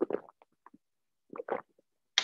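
A person drinking from a glass, with two short gulping swallows, one right at the start and another about one and a half seconds in, picked up close on a computer microphone.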